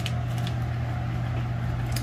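A steady low hum, with a couple of faint light clicks in the first half second.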